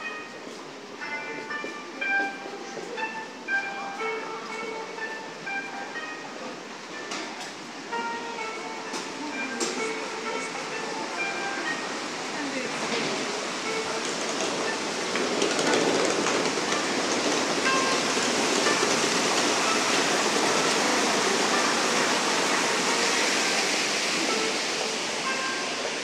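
Background music in a shopping arcade, a simple melody of single held notes, with a few sharp clicks. From about twelve seconds in, a steady rushing noise swells up, covers the melody and stays loud to the end.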